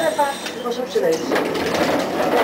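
Konstal 105Na tram running, with voices in the car. Its running noise grows into a louder, rattly rush in the second half.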